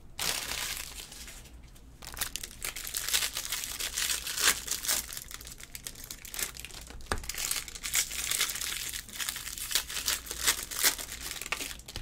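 Foil wrappers of Bowman Jumbo trading-card packs crinkling and tearing as packs are ripped open and handled, a steady run of quick crackles.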